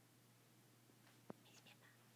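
Near silence: faint room hiss with one soft click a little past halfway and a few faint high ticks after it.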